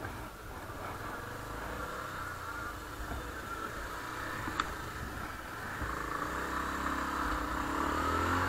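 Motorcycle engine running as the bike pulls away and rides along the street, with wind and road noise on the rider's camera microphone. A single sharp click comes about halfway, and the engine gets louder over the last couple of seconds.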